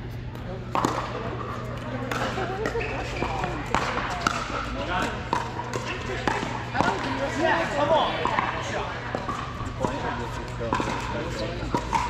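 Pickleball paddles striking plastic balls: irregular sharp pops from the near court's rally and from neighbouring courts, with ball bounces on the court floor, over a background of voices chattering in a large hall.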